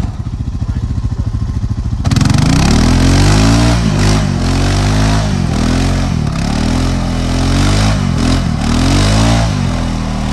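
ATV engine idling with a low pulse for about two seconds, then revved hard again and again, rising and falling about five times, as the quad churns its mud-buried tyres trying to get unstuck.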